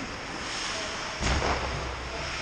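Ice rink game ambience: a steady hiss of the arena and skating, with a thump a little over a second in followed by a low rumble.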